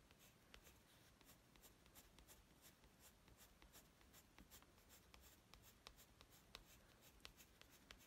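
Faint scratching of a coloured pencil on paper: a run of short, quick strokes drawing eyebrow hairs.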